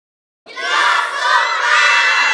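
Silence, then about half a second in a group of children starts shouting and cheering all at once, loud and high-pitched.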